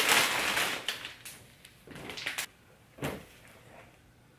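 Plastic wrapping on a pack of microfibre towels crinkling as it is handled, densest in the first second, followed by a few brief rustles and handling noises.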